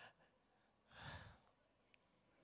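Near silence broken by one soft breath or sigh from a man, about a second in, picked up by the handheld microphone he is holding.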